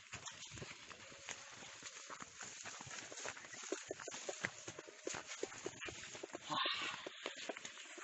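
Footsteps and rustling as people push through dense undergrowth: irregular crackles and snaps of leaves and twigs, with a louder rustle about six and a half seconds in.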